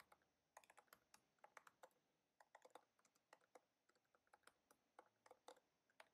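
Faint, irregular keystrokes of typing on a computer keyboard.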